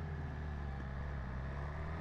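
BMW S1000RR inline-four engine running at low, steady revs.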